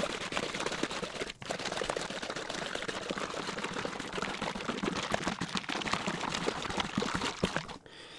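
A pint plastic bottle of thick liquid plant nutrient being shaken hard, the liquid sloshing and knocking inside in a fast continuous rattle. There is a brief pause about a second and a half in, and the shaking stops just before the end.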